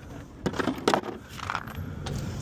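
A handful of sharp metallic clinks and clatters of small metal parts, about five in quick succession between half a second and one and a half seconds in, as tools and a plastic parts tray are handled on pavement.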